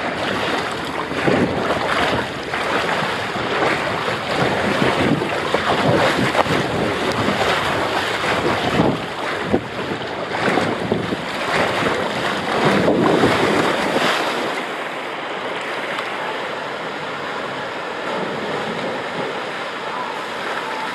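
Rushing water and a rider sliding down a Polin fibreglass body slide, with wind buffeting the microphone, the noise surging and dipping through the turns. About fourteen seconds in it gives way to a steadier, thinner hiss of water.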